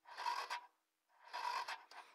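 Kawasaki KLX 140 electric starter cranking in two short raspy bursts without the engine firing, which the owner puts down to a weak battery and a flooded carburettor.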